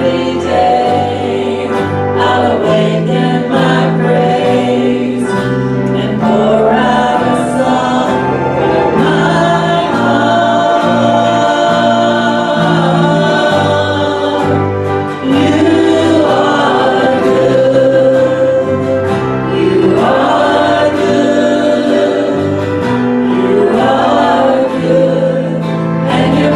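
Live gospel worship song: a small church band with several singers at microphones and guitars, singing a slow song over a steady bass line whose held notes change every second or so.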